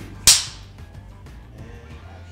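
Film clapperboard snapped shut once: a single sharp wooden clap about a quarter second in, with a short ringing tail, over quiet background music.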